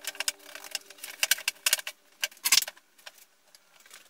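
Thin wooden strips clacking and knocking against each other as they are shifted by hand on a workbench: a quick irregular run of light knocks, loudest about two and a half seconds in, then quiet.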